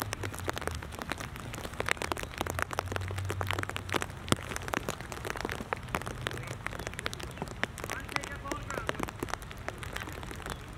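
Raindrops striking the plastic cover over the camera, a dense, irregular run of sharp taps.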